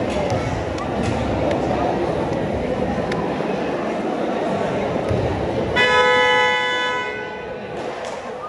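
Gym crowd chatter, then about six seconds in a basketball game buzzer sounds one loud, steady tone for just over a second, the signal to resume play as the referee returns to the court.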